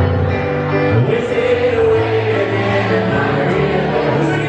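Live piano music with singing, a long note held by the voice from about a second in.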